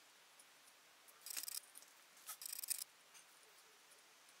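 Utility-knife blade scraping softened red varnish off a wooden revolver grip panel: two short scrapes, about a second in and again past the middle.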